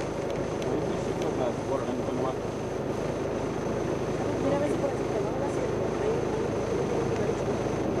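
Steady drone of a vehicle driving along a road, with indistinct talking beneath it.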